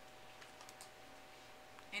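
Quiet room tone with a few faint, scattered clicks over a steady faint hum.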